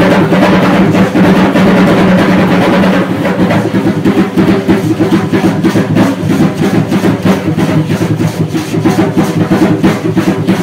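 Drumming for Aztec-style danza: a drum beats a fast, steady dance rhythm over a dense rattling layer. About three seconds in the beat turns sharper and more evenly spaced.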